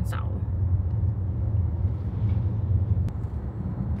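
Steady low rumble of a car being driven on a city street, heard from inside the cabin.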